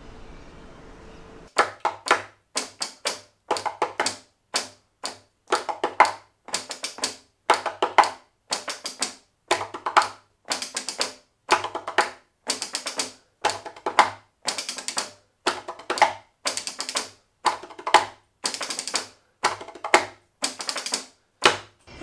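Dr. Squiggles rhythmic tapping robots striking with their solenoids, answering a rhythm tapped by hand on a wooden stool top. The taps come in quick groups of several, each tap with a short ringing tone and brief silences between groups, starting about a second and a half in.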